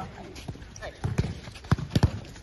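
Soccer balls being kicked and trapped on artificial turf: a run of sharp thuds from passes and first touches, about four of them in the second half.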